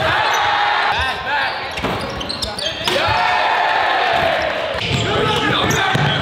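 Basketball game sound in a gym: the ball bouncing on the hardwood court, with a crowd's voices rising and swelling into a cheer at the dunks.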